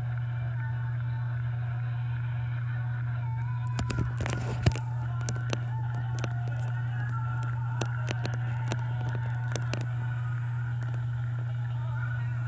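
A stage show's voices and music playing faintly from a screen's speaker over a steady low hum, with a run of clicks and knocks in the middle from the recording phone being handled.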